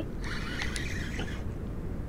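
A spinning reel being cranked to bring in a small hooked flounder: a quiet mechanical sound for a little over a second, over a steady low background noise.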